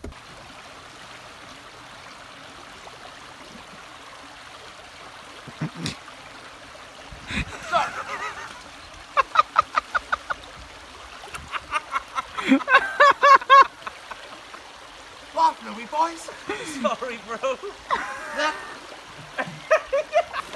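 Shallow river running steadily, broken by several bursts of rapid, pitched, pulsing calls, loudest a little past halfway.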